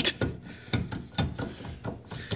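Sidecar suspension axle rocked by hand, knocking and clicking irregularly in its pivot: the sign of a pivot bushing that is completely worn out.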